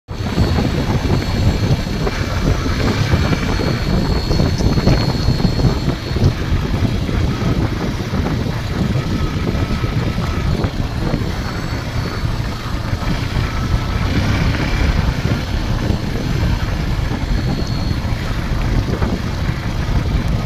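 Wind buffeting the microphone of a moving motorcycle, with the bike's engine running underneath at road speed.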